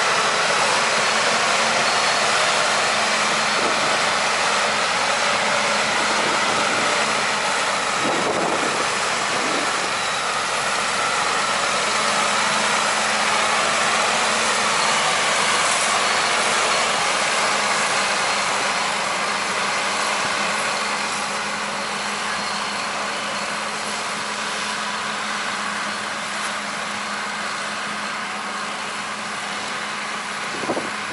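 Heavy diesel engines of a wheel loader and a semi-truck running steadily with a constant low hum as the loader tows the truck out of snow on a strap. The sound eases slightly over the last part.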